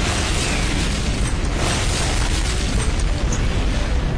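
Sound of a huge explosion: a loud, steady rumble with a hiss over it, continuing after a sudden blast onset.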